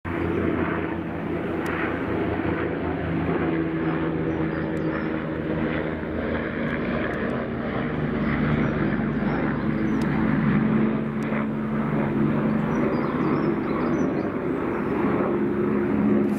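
Leonardo AW169 twin-turbine helicopter flying overhead: the steady sound of its main rotor and engines, holding level throughout.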